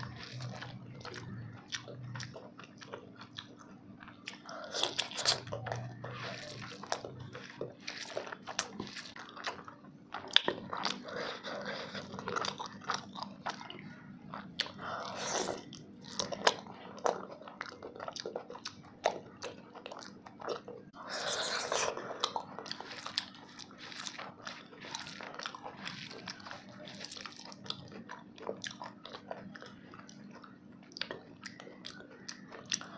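A person chewing and crunching a rice meal with fried food, eaten by hand: many short wet mouth clicks and smacks, with a few louder crunching bursts.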